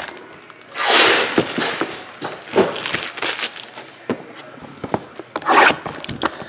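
A shrink-wrapped cardboard card box being picked up and handled on a table: a long scraping rustle about a second in, scattered light taps and rubbing, and another brief rustle near the end.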